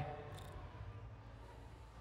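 A pause in speech: faint, steady low background hum, with a brief faint hiss about half a second in.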